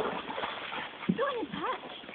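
A dog whining: two or three short whines that rise and fall in pitch, about a second in, over the steady rush of shallow creek water.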